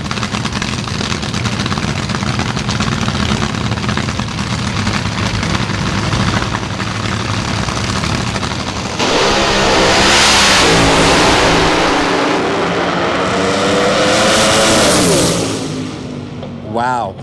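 Two supercharged, nitro-burning AA/Fuel dragster engines running at the starting line, then launching together at full throttle about nine seconds in. The much louder engine note climbs, dips and climbs again as a driver pedals the throttle, then falls away near the end.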